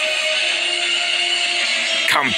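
Background music with long, steady held notes.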